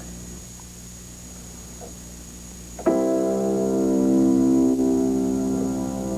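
A faint steady hum, then about three seconds in a keyboard chord is struck and held, fading only slightly.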